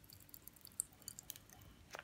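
Popping candy crackling faintly in a child's mouth: scattered tiny pops and snaps at irregular intervals.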